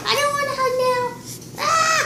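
A young girl's high voice singing drawn-out notes without clear words: one held note lasting about a second, then a shorter note that rises and falls near the end.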